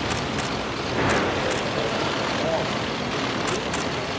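Steady outdoor crowd hubbub with faint voices, dotted with a scattering of short, sharp clicks from photographers' camera shutters.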